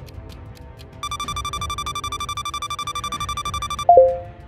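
Electronic countdown-timer alarm over light background music: from about a second in, a rapid high beeping trill runs for nearly three seconds, then cuts off into a short, loud chime near the end that marks the timer running out.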